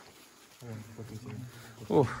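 A man's voice: low, quiet murmuring for about a second, then a short loud cry that falls in pitch at the very end.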